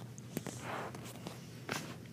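Faint handling noises from plastic toy pieces being sorted: a light click, a soft rustle, then another click.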